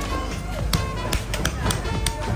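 A hammer cracking sea snail shells against a stone block: a quick series of sharp knocks and crunches, over background music.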